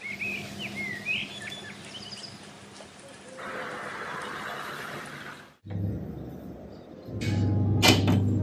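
Outdoor ambience with a faint steady hiss and several short bird chirps in the first couple of seconds. About seven seconds in it gives way to a louder low steady hum.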